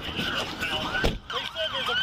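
Emergency vehicle siren in a fast yelp, its pitch rising and falling about three times a second, with a brief break and a low knock about a second in.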